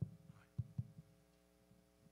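A few short, dull low knocks in the first second, then a steady hum.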